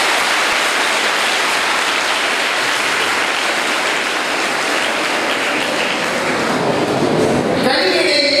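Audience applause, a steady clapping that thins out shortly before the end.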